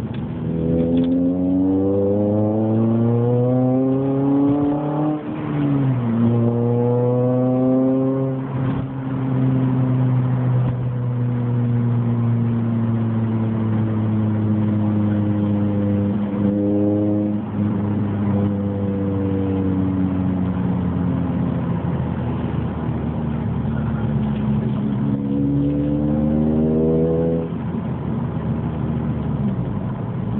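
Honda Civic Type R FN2's 2.0-litre four-cylinder engine running through a Martelius cat-back exhaust, heard from inside the cabin. It pulls up through the revs with a rising note that drops back at an upshift about five seconds in, then climbs again. It settles into a long steady cruise, then pulls once more near the end before dropping back.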